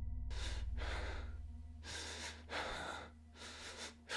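Slow, heavy human breathing, about five audible breaths in and out, over a low droning hum that fades after the first second or two.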